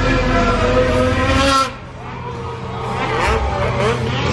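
Racing snowmobile engine running at high revs with a steady whine, which drops away abruptly about a second and a half in; an engine then rises again in pitch, getting louder toward the end.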